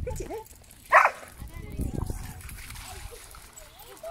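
A dog barks once, short and sharp, about a second in, then splashing as a dog runs through shallow stream water.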